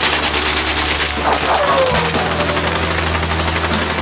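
Rapid bursts of automatic rifle fire over a film music score with a steady low drone.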